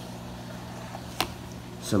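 Aquarium equipment humming steadily, an electric hum with a stream of air bubbles rising in the tank, and a single sharp click a little past halfway.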